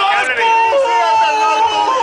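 A man singing out or wailing a loud, long high note, held steady for over a second from about half a second in.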